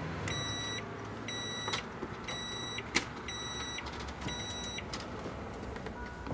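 Emerson microwave oven's running hum cuts off at the start, then its timer beeps five times, about once a second, signalling the end of the cooking cycle. A single sharp click sounds midway.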